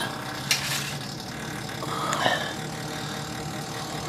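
Refrigerator running with a steady low hum, with a couple of brief clicks.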